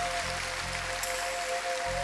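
A soft, sustained keyboard chord held steadily on two notes, over a faint hiss of hall ambience.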